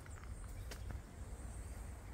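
Quiet garden background: a faint, steady high insect hum, as of crickets, over a low rumble, with a couple of light clicks about a second in.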